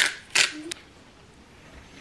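Pepper being ground over a bowl: two short, crisp grinding strokes in the first half second, then quiet room tone.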